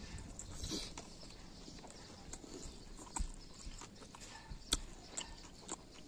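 Close-up mouth sounds of a person chewing chicken and rice: scattered wet clicks and smacks over a low background, with the sharpest clicks a little after three seconds and near five seconds.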